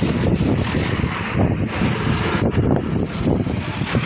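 Wind buffeting the microphone on a moving open vehicle, a loud, constantly fluttering rumble mixed with road and vehicle noise.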